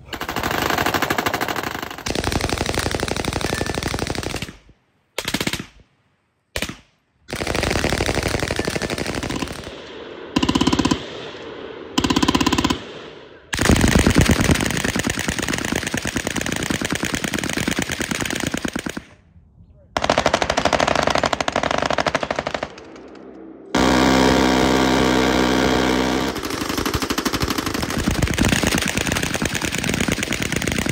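Machine guns firing tracer rounds in long bursts, one after another, with short breaks between strings. One burst past the middle is a faster, even buzz.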